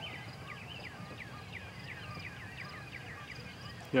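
A bird chirping a quick run of short, down-slurred notes, about four a second, over faint steady outdoor background noise.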